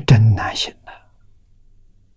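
An elderly man's brief breathy, half-whispered vocal sound, falling in pitch, in the first second, then quiet with a faint steady low hum.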